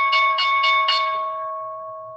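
A bell-like alert chime, struck sharply, with several quick high pings in the first second over a ringing of a few steady tones that slowly fades.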